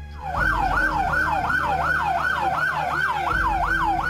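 Emergency vehicle siren in a fast yelp, its pitch rising and falling about three times a second, starting a moment in.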